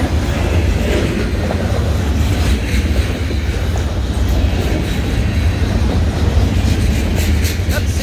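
Freight train cars rolling past at close range: a steady, heavy rumble of steel wheels on the rails, with a run of sharp clicks near the end.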